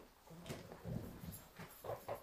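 A small audience getting up from their chairs: chairs shifting and creaking, with scattered low knocks and rustling, and a short squeak near the end.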